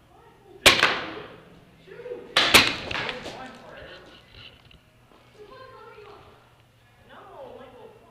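Paintball fire: one sharp crack a little under a second in, then a quick burst of several cracks about two and a half seconds in, each ringing out in the large hall. Faint distant shouting follows.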